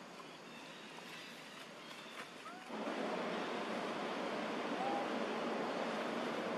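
Outdoor background noise with a few faint chirps. About two and a half seconds in it jumps abruptly to a louder, steady hiss, with a few short rising chirps over it.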